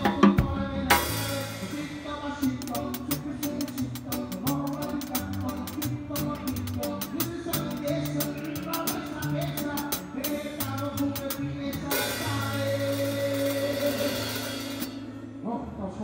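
Live band playing with a drum kit heard close up from the kit: rapid stick strokes on drums and cymbals over bass guitar notes. Cymbals wash about a second in and again from about 12 to 15 s, then the playing stops and dies away near the end.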